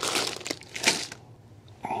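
Small plastic bag crinkling as it is handled, in irregular rustles through the first second or so, then dying down.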